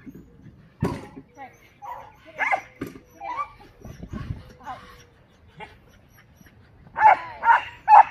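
A dog barking on an agility course, ending with four loud barks about half a second apart, mixed with a handler's short called commands and a sharp knock about a second in.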